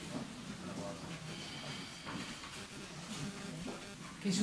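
Faint, indistinct talk of several people speaking away from the microphone, a low murmur of voices.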